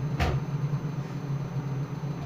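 A steady low hum runs throughout, with a single sharp knock or handling bump just after the start.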